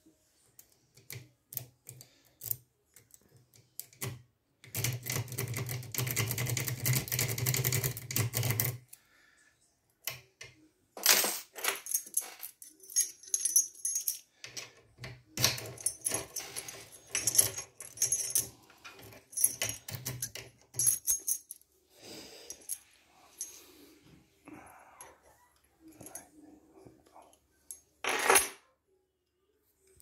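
Metal lock picks scraping and clicking in the keyway of an EVVA DPI dimple-pin cylinder lock: a dense run of rapid scraping clicks from about five to nine seconds, then scattered sharp metallic clinks and ticks, with one loud clink near the end.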